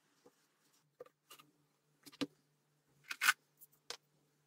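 Light scattered taps and clicks from small craft pieces and tools being handled on a worktable, with a brief louder scrape about three seconds in, over a faint steady hum.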